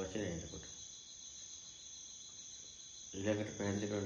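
A man's voice speaking, which stops just after the start and resumes about three seconds in, over a steady high chirring of crickets that carries on unbroken through the pause.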